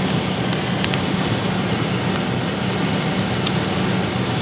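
Steady interior noise of a car cruising at about 200 km/h: a constant low engine drone under even wind and road noise, heard from inside the cabin. There is a small click about three and a half seconds in.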